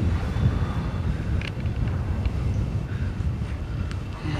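Steady low wind rumble with no speech over it.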